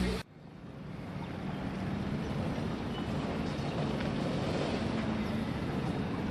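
A short laugh that cuts off abruptly, then outdoor waterfront ambience fades in: a steady rushing of wind and water with a faint low hum.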